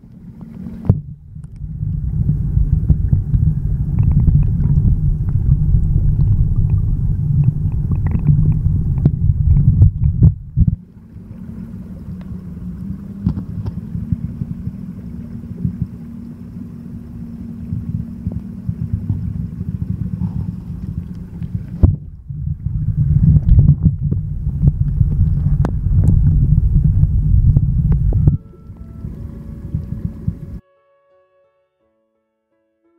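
Stream water flowing around a submerged waterproof camera, heard underwater as a deep, muffled rumble with scattered small clicks and knocks. The rumble cuts out briefly about a second in, drops quieter just before the middle, swells again a few seconds before the end and falls off near the end as the camera moves through and out of the water.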